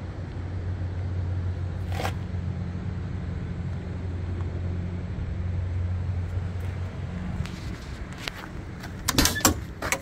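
An idling engine's steady low hum, which fades out about seven seconds in, with a single click about two seconds in. Near the end there is a quick run of sharp clicks and knocks as a metal storage bay door is unlatched and swung open.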